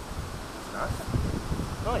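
Wind rushing through an opening in the rock, with gusts buffeting the microphone in low, uneven rumbles.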